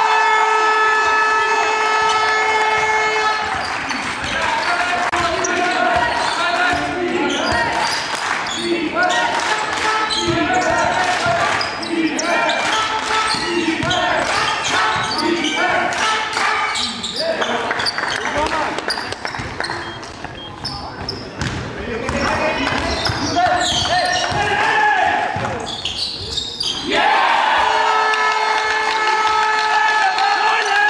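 Basketball game in a sports hall: the ball bouncing on the court and players' voices calling, echoing in the hall. A held pitched tone sounds for about the first three seconds and again near the end.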